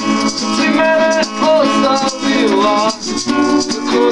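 Two acoustic guitars strummed together with a hand shaker keeping a steady rattling rhythm: an instrumental passage between sung lines of the song.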